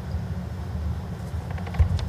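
Steady low hum of an indoor hall's background, with a few faint clicks and a short low thump near the end.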